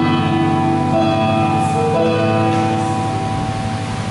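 Soft instrumental music: sustained keyboard chords held over a steady low bass, changing chord about halfway through.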